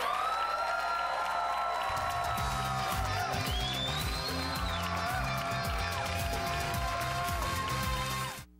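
Game-show theme music playing as a bumper into a commercial break. Long held notes open it, and a bass and drum beat comes in about two seconds in.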